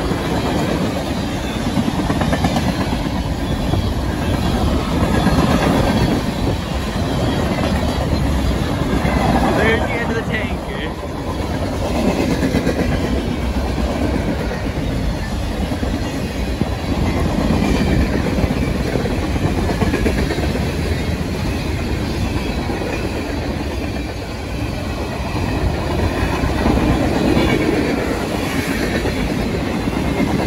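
Freight cars of a passing train rolling by close: a steady loud rumble of steel wheels with clickety-clack over the rail joints.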